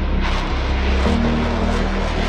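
Ship-launched missile's rocket motor at launch: a loud, steady rushing noise, heard over background music.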